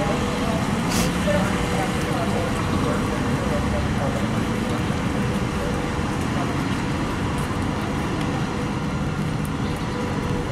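Steady street and vehicle noise, with an engine running, and faint indistinct voices in the background; one brief high-pitched sound about a second in.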